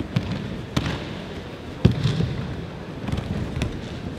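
Aikido breakfalls: bodies and hands slapping and thudding on tatami mats as partners are thrown. There are about four sharp impacts, the loudest a little under two seconds in.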